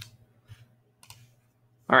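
Two short, faint clicks, about half a second and a second in, over a steady low hum. A man starts speaking near the end.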